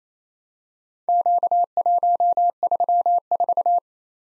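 Morse code sent as a single steady beeping tone keyed into dots and dashes, starting about a second in: four characters in quick groups, the letter-number combination Q, 1, 3, 4.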